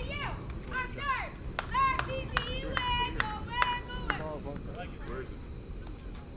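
Young girls' high-pitched voices shouting and chanting a cheer, with a few sharp claps mixed in through the middle.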